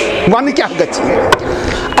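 A man's voice delivering a sermon in short bursts, then a broad rumbling, rolling noise. A single sharp click comes just past halfway.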